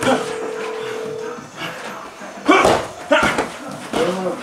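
Boxing sparring-session sounds: a steady tone for about the first second, then two loud, sharp sounds about two and a half and three seconds in, over background voices.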